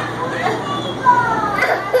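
Background chatter of children's voices in a room, with a high child's voice rising and falling from about a second in.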